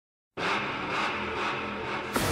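A car engine running steadily, starting abruptly after a brief silence.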